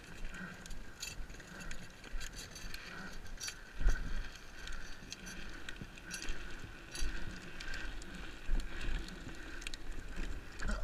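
Loose rattling and clicking over a low rumble of wind on the microphone, with heavier knocks about four and seven seconds in.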